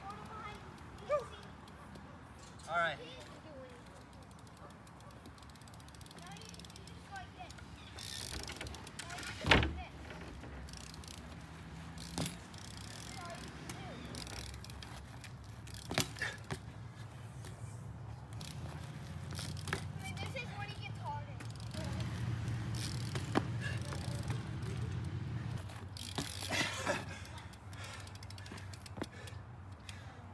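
BMX bike rolling on asphalt, with several sharp knocks of the bike landing or hitting the ground; the loudest is about ten seconds in. A steady low rumble of the tyres grows through the second half, and there are short wordless grunts and breaths from the rider.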